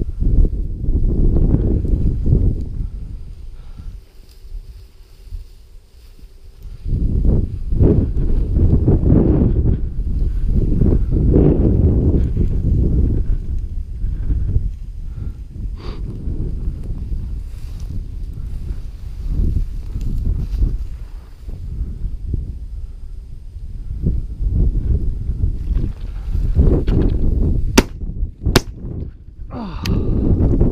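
Wind buffeting the microphone in uneven gusts, with the swish of steps through dry grass. Near the end, two sharp cracks about a second apart.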